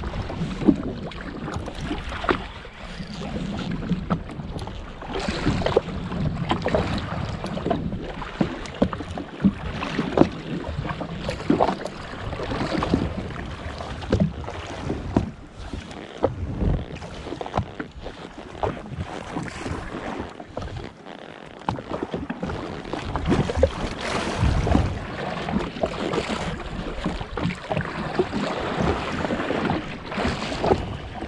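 Sea water slapping and splashing against the hull of a drifting jet ski, with irregular sharp slaps over a steady wash and wind buffeting the microphone.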